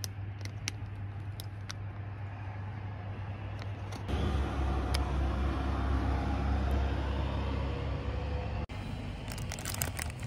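Steady low rumble of road traffic, louder for a few seconds in the middle, with scattered crinkles of a paper steamed-bun wrapper that come thick and fast near the end.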